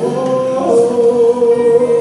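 Male vocalist singing live into a microphone through a PA, with instrumental backing, holding one long note from just under a second in.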